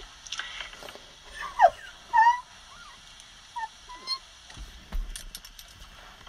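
Breathless, high-pitched laughter in short squeaky gasps, some sliding down in pitch, with a few light clicks and a low bump near the end. It comes through a phone voice-memo recording.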